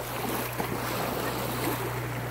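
Lake water splashing and lapping in the shallows as children kick and move about in it, with wind on the microphone. A steady low hum runs underneath.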